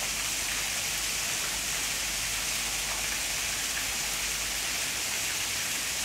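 Steady, even hiss of water, with no separate sounds standing out.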